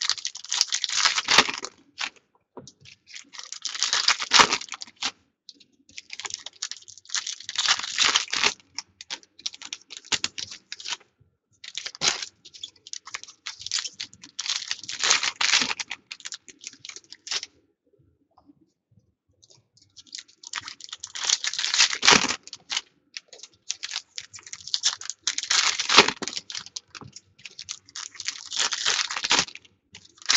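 Foil trading-card pack wrappers being torn open and crinkled by hand, with cards shuffled between tears, in irregular bursts of rustling and crackling. There is a short pause of about two seconds just past the middle.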